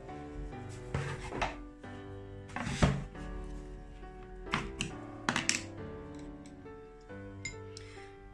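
Background music, with several sharp knocks and clicks as a jar of white paint is handled and its lid opened, the loudest a little under three seconds in.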